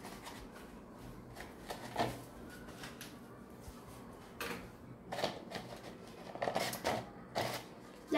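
Stiff paper cone rustling and crinkling as it is held, painted and turned in the hands: a few short rustles, more of them near the end.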